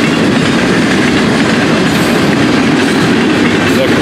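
Florida East Coast Railway freight train passing close by, its lumber flatcars and double-stack container well cars giving a loud, steady rolling noise of steel wheels on rail.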